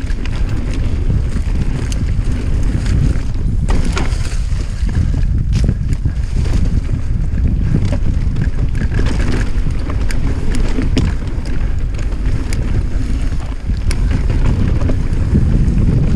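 Wind buffeting the camera microphone as a Norco Range mountain bike rolls fast down a dirt singletrack, with irregular clicks and knocks from the bike jolting over the trail.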